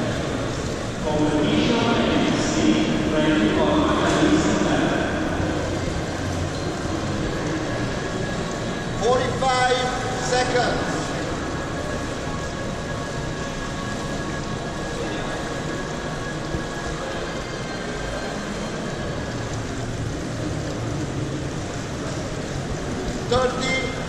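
Steady background noise of a busy indoor swimming pool hall, with indistinct voices in the first few seconds and again about nine to eleven seconds in.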